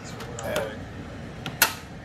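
A single sharp click about one and a half seconds in, over a faint steady hiss.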